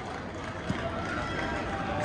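Steady background noise of a large, busy sports hall, with one faint short click under a second in.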